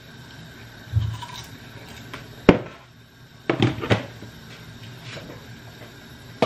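Kitchen handling sounds: a dull thump, then a single sharp knock, then a couple of clattering knocks, as things are picked up and set down on the counter and stove.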